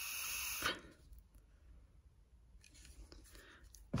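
Breath blown through a removed thermostatic radiator valve set to fully closed: a rush of air that stops under a second in. Air gets through, so the valve has obviously just failed to shut off.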